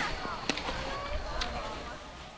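Cross-country skate skiing on hard-packed snow: two sharp clicks of ski poles about a second apart, over distant voices and a low rumble of wind on the microphone.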